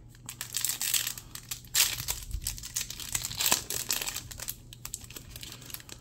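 A 2022 Bowman baseball card pack's foil wrapper being torn open and crinkled in the hands, in irregular bursts of crackling.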